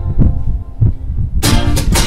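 Live rock music between sung lines: a few low thumping beats with little else above them, then about one and a half seconds in the full band, with strummed guitar, comes back in loud.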